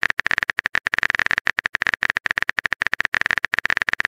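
Texting-app typing sound effect: a fast, even run of keyboard-like clicks, each with a bright ringing tone.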